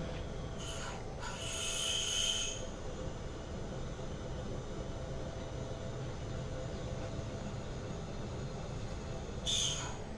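CNC vertical machining centre running a drilling cycle, a twist drill cutting an aluminium block, over a steady machine hum. A bright, hissing burst with a high whine comes about half a second in and lasts about two seconds, and a shorter one comes just before the end.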